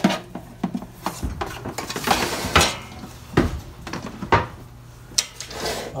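Handling clatter of an air fryer's basket and metal wire rack: a string of short knocks and light rattles, with a longer scraping slide about two seconds in.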